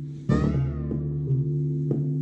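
Moog Sub 37 analog synthesizer note played about a third of a second in: a bright, buzzy attack whose overtones fall in pitch and fade within about half a second, leaving a deep bass tone. Under it runs a looping electronic groove of steady bass notes and occasional ticks.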